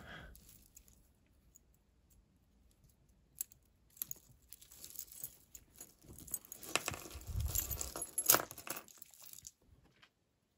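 Tangled costume jewelry (metal chains, beads and bangles) jangling, clinking and rustling as hands dig through and pull at the pile. It is quiet for the first few seconds, busiest and loudest shortly before the end, and stops abruptly.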